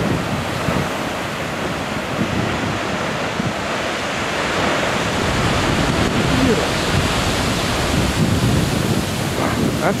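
Heavy ocean surf breaking and crashing against shoreline rocks: a loud, continuous roar of whitewater that swells as a large wave breaks over the rocks about halfway through. Wind buffets the microphone.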